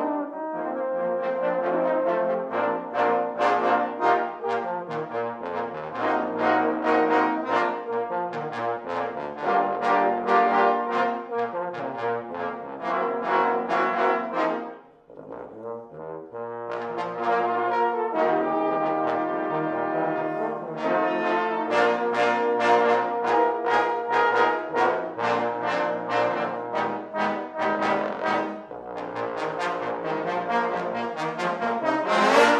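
A trombone choir playing a piece of sustained chords and moving lines. About halfway through the sound thins to a brief near-pause, then the full ensemble comes back in.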